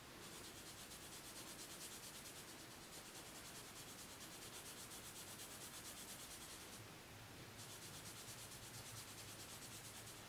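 Faint, even scrubbing of a sponge applicator rubbing PanPastel pastel into paper in quick back-and-forth strokes.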